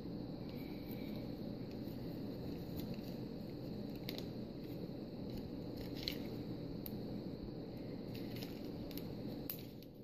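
Steady low room hiss with a few faint handling clicks and rustles, about four and six seconds in, from nail-art packets being moved about.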